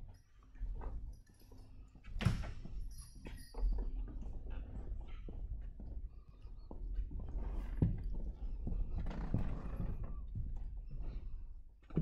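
Footsteps on a hard floor and scattered knocks and bumps of handling, over a low rumble from a hand-held camera being moved.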